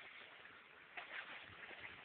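Near silence: faint outdoor background, with a couple of soft, faint short sounds about a second in.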